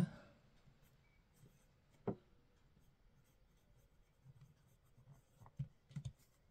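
Faint scratching of a Nahvalur Schuylkill fountain pen's double broad steel nib writing on Clairefontaine 90 gsm paper, with a soft knock about two seconds in and light taps near the end.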